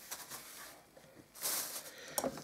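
Faint rustling of a thin plastic bag being handled, with a brief louder rustle about one and a half seconds in.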